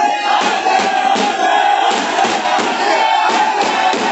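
A large crowd shouting and cheering together, loud and continuous, over music with a regular beat.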